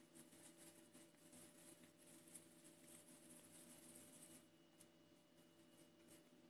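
Near silence: faint soft handling sounds as hands shape a ball of cornmeal arepa dough, with one small click near the end.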